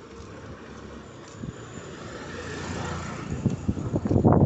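A motor vehicle running in street traffic, its steady engine and road noise growing louder through the second half as it draws closer.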